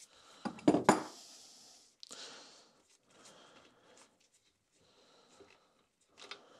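Small removed bolts being handled and bagged: two sharp knocks about half a second to a second in, a short plastic-bag rustle about two seconds in, then faint light clicks.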